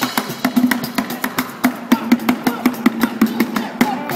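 Live acoustic street band playing upbeat music: guitar and upright double bass plucking a low bass line under a fast, busy rhythm of hand-percussion strikes on a cajón and a bucket drum.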